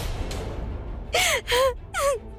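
A woman's sharp, breathy gasp, followed about a second in by short, high, wavering whimpering cries as she weeps. A low drone of background music runs underneath.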